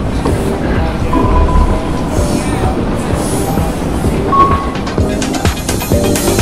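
Subway train ride noise, a dense rumble with two brief high squeals, about a second in and about four seconds in, laid over music.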